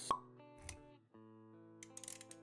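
Intro music with held notes, punctuated by a sharp pop just after the start and a softer low thud a moment later; the music drops out briefly about a second in, then comes back.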